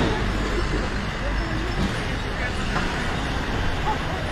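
Street traffic at a city intersection: a box truck passing close by, with a steady low rumble of engines and tyres that is heaviest in the first two seconds.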